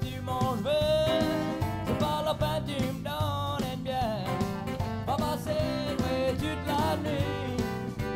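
A Cajun band playing an instrumental break: a lead melody that slides between notes over a steady beat and guitar accompaniment.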